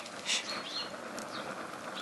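Wood fire burning in an open metal fire basket: a steady hiss with a few sharp crackles and pops, the clearest about a third of a second in. Faint short high chirps sound in the background.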